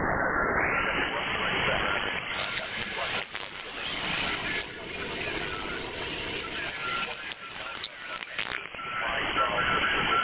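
Shortwave receiver hiss from a software-defined radio in USB mode, with no station coming through strongly. The hiss grows brighter and fuller as the receive filter is widened in steps over the first few seconds, then turns duller again as the filter is narrowed near the end. A faint steady tone runs under it.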